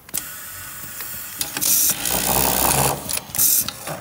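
Automatic glove label-sewing machine running a cycle: a stretch of rapid stitching in the middle, with two short bursts of air hiss from its pneumatic parts about a second and a half apart.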